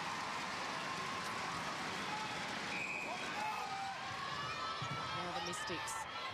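Large indoor arena crowd cheering steadily after a home goal, many voices blended together. A short umpire's whistle sounds about three seconds in for the restart.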